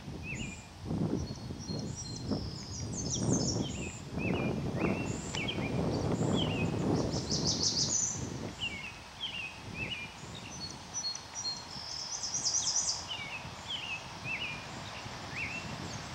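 Wild birds singing in trees: a run of short chirps, with a brief high trill every few seconds. Under them is a low, uneven rustling noise that is strongest in the first half.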